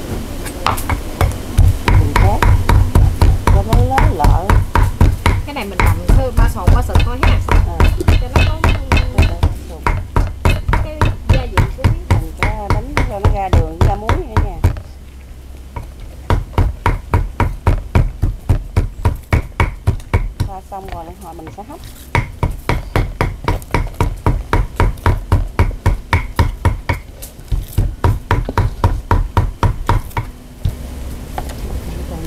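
Cleaver chopping pork on a wooden cutting board to mince it fine: a steady run of sharp knocks, about four strokes a second. The chopping stops briefly about halfway through and again a few seconds later.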